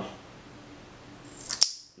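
A short metallic scrape ending in one sharp click about one and a half seconds in, from handling the KWC Smith & Wesson M&P 40 CO2 airsoft pistol's metal magazine, a part that has to be held down by hand for loading because it does not stay down.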